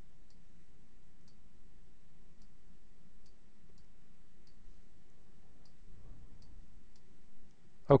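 Faint, irregular clicks of a computer mouse button, roughly one a second, over a steady low hum.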